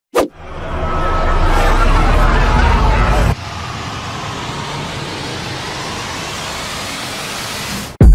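Intro sound effects: a sharp hit just after the start, a loud rumbling noise swell that cuts off suddenly a little past three seconds in, then a steadier whoosh that rises in pitch, building up to the intro music.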